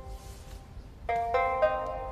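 Background score music of a plucked string instrument, zither-like: a sparse first second, then a few slow plucked notes ringing out from about a second in.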